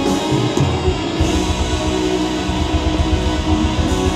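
Live band music led by guitars, with a rhythmic low beat coming back in about a second in.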